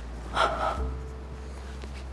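A woman crying: one sharp, sobbing gasp of breath about half a second in, over a low steady hum.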